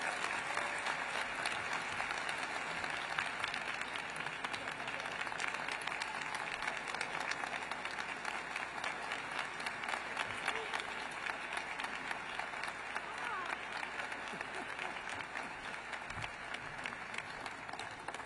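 Audience applauding steadily: a dense patter of many hands clapping that eases off slightly toward the end.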